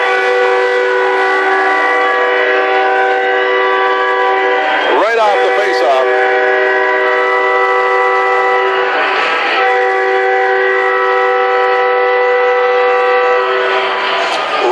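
Arena goal horn for a home-team goal, a loud chord of several steady notes blowing in two long blasts, the first about five seconds, the second about seven and a half, with a short break between them.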